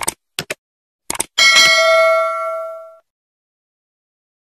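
Subscribe-button animation sound effect: a few quick mouse clicks, then a notification bell ding about a second and a half in that rings out and fades over about a second and a half.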